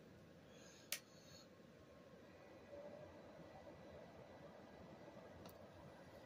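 Near silence broken by a single sharp click about a second in: a space heater's switch being turned on. A faint steady noise follows from about three seconds in.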